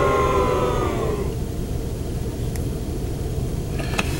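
A sustained chord of several steady tones fades out about a second in, followed by a steady low rumble.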